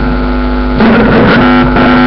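Steady electrical buzz with a low mains hum from the PA system, a constant droning tone with no speech over it.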